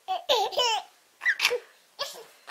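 A baby laughing in two short bursts, the second shorter, during a game of peekaboo with a blanket.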